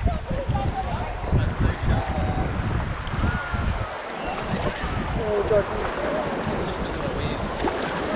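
Wind buffeting the microphone, over choppy water splashing and slapping against a plastic kayak hull as it is paddled along.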